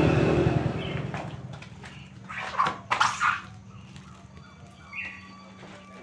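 A few sharp clicks and knocks a couple of seconds in as a wooden front door is unlocked and swung open, then a short bird chirp near the end.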